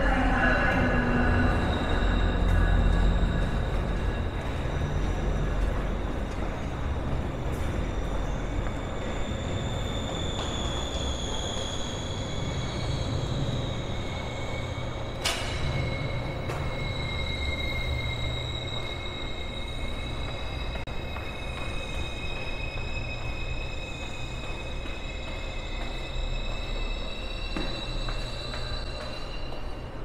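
Steel wheels of a passing train squealing in long, high, slightly wavering tones over a low rumble that is loudest in the first few seconds and then eases off. A single sharp click comes about halfway through.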